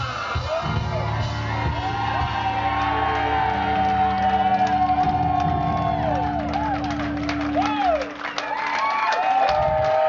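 Live rock band ringing out the closing chords of a song while the crowd cheers and whoops. The band's low sustained notes drop out about eight seconds in, and the cheering carries on.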